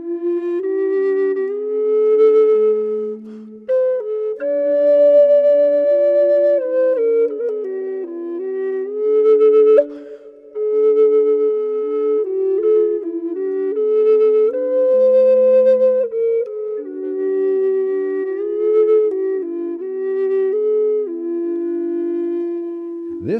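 Two Native American flutes playing together in complementary keys: a looped recording of one flute under a second flute played live. The two lines sound at once, with held notes stepping between pitches.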